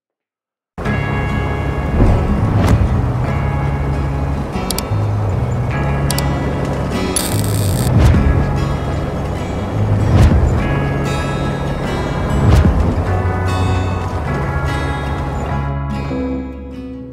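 Background music that starts abruptly about a second in and plays loudly throughout, with shifting bass notes.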